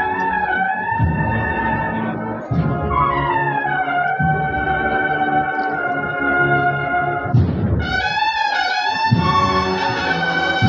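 Brass band playing a slow processional march: trumpets and trombones carrying a held, sliding melody over steady drum beats.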